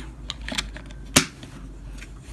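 A few light clicks from the hard plastic case of a Playmates Tricorder toy being handled, then one sharp click a little after a second in as the back compartment cover snaps shut.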